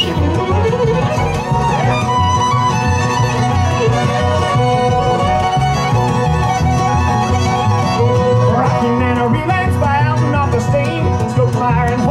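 Live bluegrass band in an instrumental break between verses: the fiddle plays the lead, with quick sliding melody lines. Banjo, acoustic guitar and upright bass keep a steady rhythm underneath.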